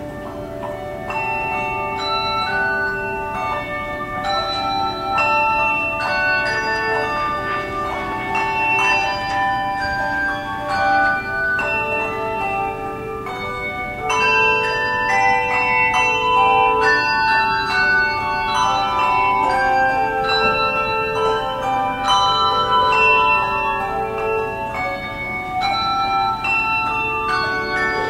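Handbell choir playing a melody with no singing: many struck handbells in overlapping notes that ring on after each strike, in a steady flow of notes.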